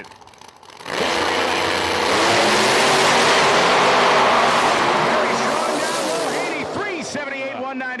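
Two radial-tire drag cars, one of them a nitrous-boosted 2016 Camaro, launching together at full throttle. The sound starts suddenly about a second in, stays loud for several seconds, then fades as the cars run away down the track.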